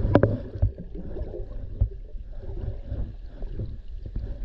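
Underwater recording of irregular sharp clicks and taps over a low water rumble, the loudest click just after the start and another clear one a little before the two-second mark. The tapping sounds like tiny hammer strikes.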